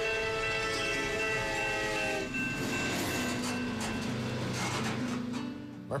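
Train horn sounding a long, steady multi-tone chord that stops about two seconds in, followed by the rumbling noise of a train rolling along the rails.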